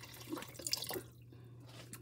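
A stream of water poured into a saucepan over fish steaks, splashing and dripping, then tapering off about a second in.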